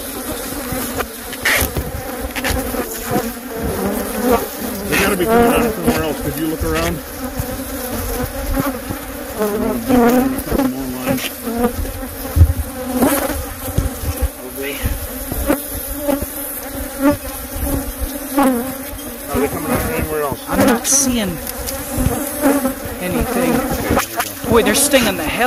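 Dense buzzing of a disturbed colony of Africanized honey bees swarming close around the microphone, single bees rising and falling in pitch as they fly past, with occasional sharp knocks.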